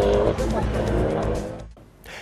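Rally car engine running at high revs as the car slides through a dirt corner. The sound fades out near the end.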